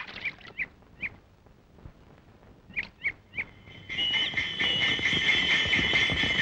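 Birds chirping in short separate calls, a group of about four in the first second and three more around three seconds in. From about four seconds in, a steady high shrill sound sets in.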